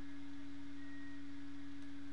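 A single low note held steady from the anime film trailer's score, a sustained drone with a lower hum beneath it.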